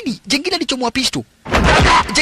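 A man's voice, then about a second and a half in, a loud gunshot from a film soundtrack, a sudden blast with a heavy low boom.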